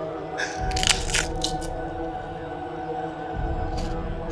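Sustained background music under a few crisp crunches of food being bitten and chewed, a cluster about a second in and one more near the end.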